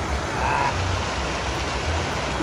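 Steady splashing of pool fountain jets arcing into the water.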